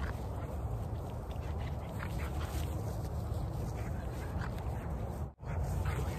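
An American Bully in a weight vest breathing hard in a series of short huffs and grunts while chasing a flirt pole lure, a sign that the vest is tiring it quickly. A steady low rumble runs underneath.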